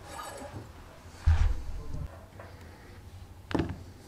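Handling noises on a wooden workbench: a dull thump just over a second in, then a sharp click near the end.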